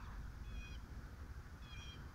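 Two short, high-pitched animal calls about a second apart, over a steady low rumble.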